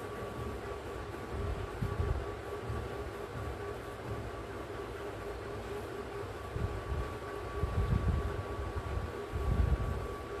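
Steady background hum with a faint high whine running through it, and a low rumble that swells a few times, most strongly near the end.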